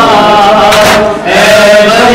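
Men chanting a noha, a Shia mourning lament, in unison into a microphone, with no instruments. The voices hold long, wavering melodic lines and break off briefly just past a second in before resuming.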